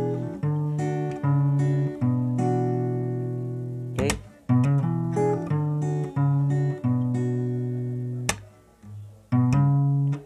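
Acoustic guitar with a capo playing a picked chord passage from the refrain progression, with bass notes under ringing upper strings. Two sharp knocks cut through, about four seconds in and again just past eight seconds, the second followed by a brief pause before the playing resumes.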